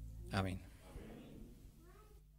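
The last notes of the keyboard and guitar fade out, cut across about a third of a second in by one short spoken word, a single syllable, into a microphone. A faint small sound follows near the end.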